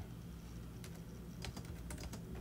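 A few faint, scattered keystrokes on a computer keyboard while a scripture is being searched for, over a low steady hum.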